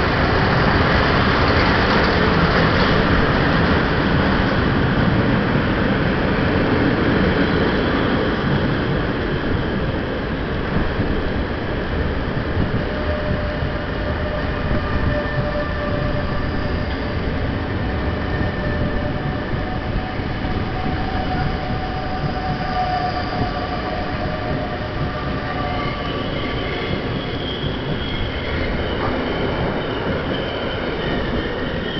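Passenger train hauled by an SBB electric locomotive rolling past on the next track. The locomotive is loudest in the first few seconds, then a long line of coaches runs by with thin, steady wheel squeal until the last coach passes near the end.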